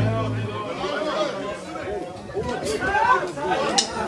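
Overlapping chatter of several people talking at once, with low background music cutting out about half a second in.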